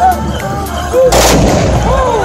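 A tbourida troupe's black-powder muskets fired together in one volley: a single loud blast about a second in, with a short rumbling tail.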